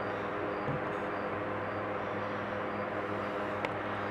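Steady low background hum with a few faint steady tones running through it, and a faint tick near the end.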